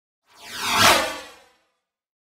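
Whoosh sound effect for an animated logo: a single rush that swells, peaks about a second in and fades out, sweeping downward in pitch.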